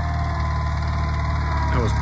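Ariens garden tractor engine running steadily as it pulls a Brinly disc harrow across plowed ground: a constant low hum with a faint steady whine above it.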